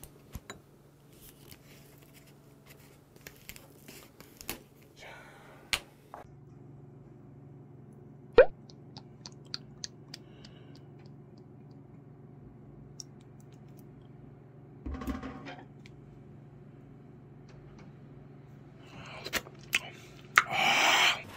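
Thick makgeolli being handled and poured from its plastic bottle into a ceramic bowl: a few sharp clicks and knocks, then a soft, steady pour, over a low room hum.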